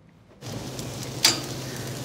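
Raw seasoned chicken thighs sizzling on the hot grates of a gas grill, the sizzle starting suddenly about half a second in, with one sharp click a little after a second in.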